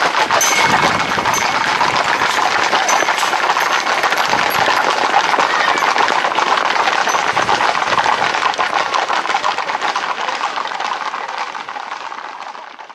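Hooves of Camargue horses and bulls running on a paved lane: a dense, rapid clatter, fading out near the end.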